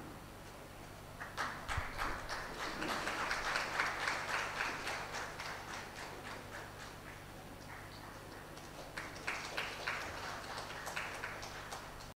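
A small group of people clapping by hand: scattered claps start about a second in, thicken, and tail off by about six seconds, then a shorter round of claps comes near nine seconds.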